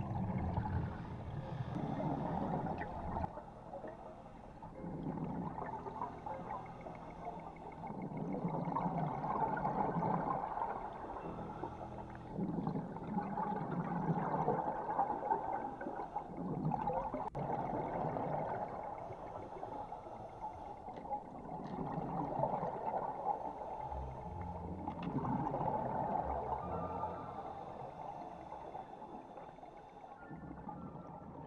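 Scuba diver's regulator breathing heard underwater: gurgling rushes of exhaled bubbles that swell and fade in repeated surges every three to four seconds.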